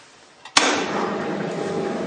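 A popsicle machine being switched on: a click, then about half a second in its refrigeration compressor and fan start suddenly and run on with a steady noise.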